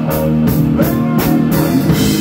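Live rock band playing loud: distorted-free electric guitar chords over a drum kit, with cymbal hits keeping a steady beat about three times a second.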